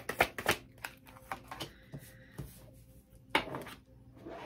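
Tarot cards being shuffled by hand: a quick run of crisp card clicks in the first moment, then scattered soft taps and one louder snap a little past three seconds in.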